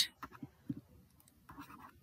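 Faint scratching of a pen or stylus writing on a tablet, a short stroke of it about one and a half seconds in.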